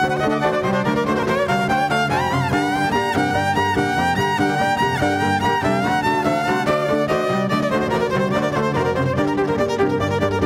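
Electric violin bowed in a quick melodic passage with sliding notes, over sustained low notes beneath it.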